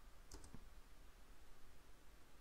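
Near silence: room tone, with a couple of faint mouse clicks about a third of a second in.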